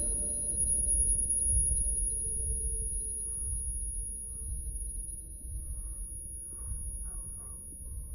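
Film sound design of deafened hearing after a gunshot: a dull, muffled low rumble with uneven throbs under a thin, steady high ringing tone, slowly fading. A few faint, smothered sounds come through in the second half.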